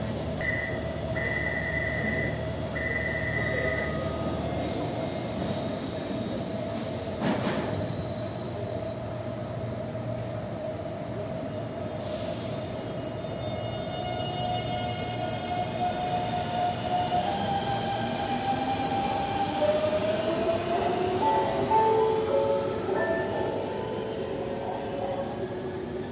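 Taipei MRT metro train at the platform. Three short high beeps sound in the first few seconds, over a steady whine. From about two-thirds of the way through, the train's electric traction motors give out tones that rise in pitch in steps, as a train does when pulling away.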